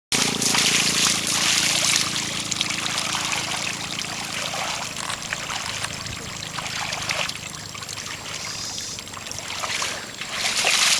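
Muddy water sloshing and trickling as a carabao (water buffalo) drags a plow through a flooded rice paddy. A faint low hum runs under it for the first few seconds.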